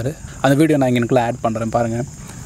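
Crickets chirring steadily, with a voice running through a quick, evenly paced string of syllables, about four a second, from about half a second in.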